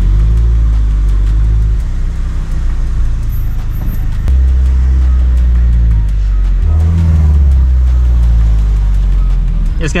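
Subaru BRZ's flat-four engine running at low speed, heard from inside the cabin as the car moves slowly through a parking lot. Its low drone shifts in pitch about four seconds in and again near seven seconds.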